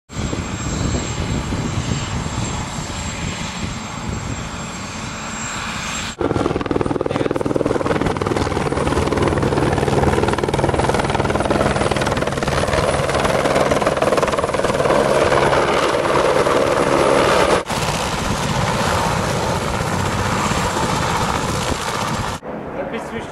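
Helicopter flying, a loud steady rotor and engine sound, changing abruptly twice where the footage is cut.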